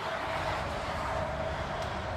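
Steady rush and hum of an RV's ducted rooftop air conditioner running, its air blowing through the ceiling vents.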